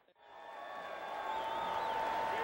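Football stadium crowd noise fading in from near silence after an edit cut, with a steady high tone sounding over it from about halfway through.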